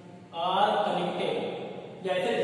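A man's voice drawing out his words in a slow, sing-song way, starting about a third of a second in.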